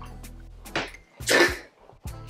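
A short, loud slurp about one and a half seconds in, as a bite of fufu coated in slimy ogbono soup is sucked into the mouth, over soft background music.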